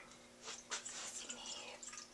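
Coffee poured from a carafe into a glass measuring cup: a faint, uneven trickle and splash starting about half a second in.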